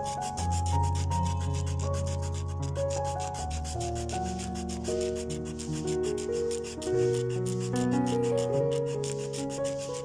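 A razor blade held upright scraping back and forth over laser-printed paper in quick, even strokes, rubbing the toner off the surface. Soft background music with slowly changing held chords plays under it.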